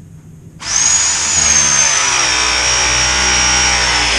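Power press tool running through a press cycle, crimping a Viega MegaPress fitting onto galvanized steel gas pipe. A steady motor whine starts about half a second in and settles slightly lower in pitch as the jaws close.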